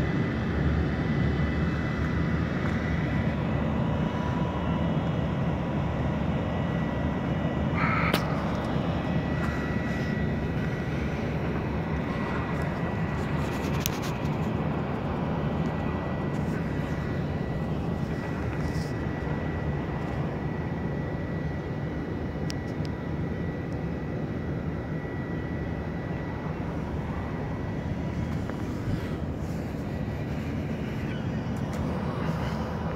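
Steady low engine drone from a Great Lakes bulk freighter manoeuvring astern, with a faint steady high whine above it; the drone eases slowly.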